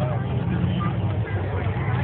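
Drag-racing vehicle's engine running with a low, steady rumble, with people talking over it.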